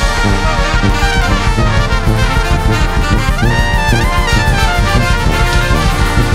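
Brass band playing an instrumental funk tune: trumpets and trombones in full ensemble over a steady beat. About three seconds in, a horn line sweeps up to a high held note and drops away about a second later.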